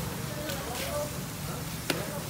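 Faint background voices over a steady low hum, with one sharp click near the end.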